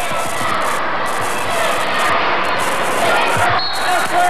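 Gymnasium crowd noise during live basketball play, with a ball bouncing on the hardwood floor.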